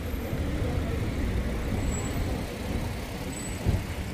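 Steady low rumble of city road traffic, with a short thump near the end.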